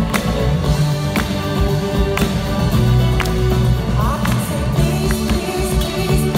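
A live band plays in a concert hall, heard from the audience: drum kit hits keep a steady beat under sustained bass, guitar and keyboard notes, with a woman singing.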